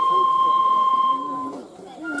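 Japanese bamboo transverse flute (shinobue) holding one long high note that stops about one and a half seconds in, with voices murmuring beneath it.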